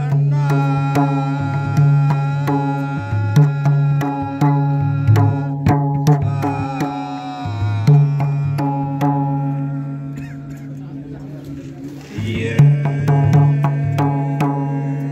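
A group of men singing a Nepali bhajan (devotional hymn) with a two-headed barrel hand drum beating along. The sound eases off for a couple of seconds past the middle, then comes back strongly with drum strokes.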